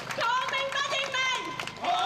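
A woman shouting a slogan into a handheld microphone, her voice amplified over a rally's loudspeakers, with a crowd joining in chanting near the end.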